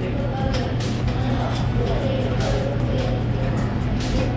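Background music over a steady low machine drone, with scattered light clicks and clatter of kitchen work.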